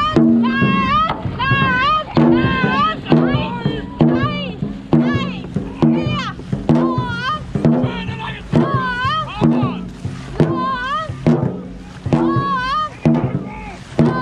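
Dragon boat crew racing: a drum beaten in a steady stroke rhythm, with short high shouts repeated on each stroke and paddles splashing into the water.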